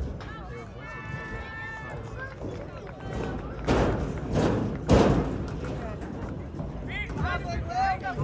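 People's voices shouting, one drawn-out call about a second in and more calls near the end. About halfway through come three loud thuds about half a second apart.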